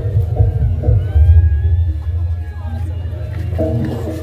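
Loud live jaranan music: a repeating figure of short pitched notes over a heavy low rumble. The figure drops out about a second in, leaving the rumble and faint gliding high tones, and comes back near the end.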